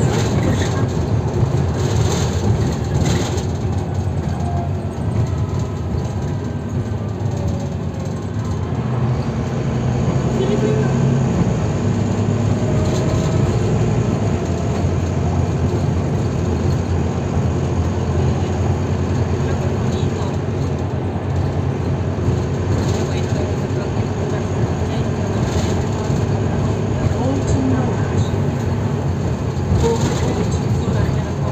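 Volvo B9TL double-decker bus under way, heard from inside the lower deck: its six-cylinder diesel drones steadily along with road and body noise. The drone grows a little louder about ten seconds in.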